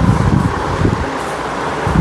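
Uneven low rumble of air buffeting and handling noise on a clip-on microphone while walking, over a steady background hiss.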